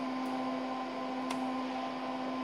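Steady hum and whir of a running DEC PDP-8/e minicomputer's cooling fans and power supply, one low tone held under a hiss, with two faint clicks.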